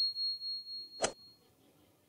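Subscribe-button sound effect: a single sharp mouse-style click about a second in, over a thin, steady high chime tone that stops soon after.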